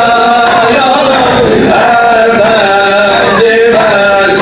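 A man singing a Turkish song in long, held notes that glide and waver from one pitch to the next, over a musical accompaniment.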